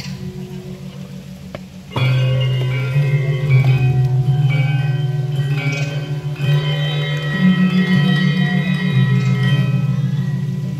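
Balinese gamelan of bronze gongs and metallophones. It opens on low ringing tones that waver, then about two seconds in the metallophones come in loudly with a busy run of struck, ringing notes over the low gong tones.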